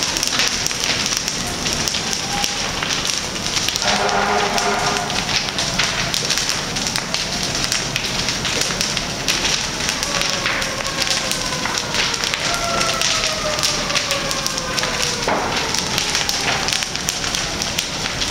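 Burning wooden houses crackling steadily: a dense run of sharp snaps over a rushing hiss of flame.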